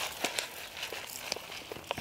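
Granular fertilizer being shaken from a bag onto the soil around a rose bush: faint rustling with a few small ticks.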